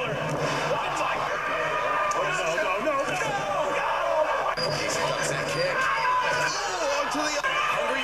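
Wrestling footage playing back: a commentator talking continuously over arena crowd noise.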